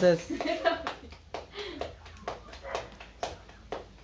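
Hands patting corn masa into tortillas, a run of short sharp slaps at irregular intervals, about two a second.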